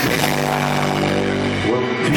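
Live rock band music: a held chord rings on without drum hits, and a note bends upward near the end.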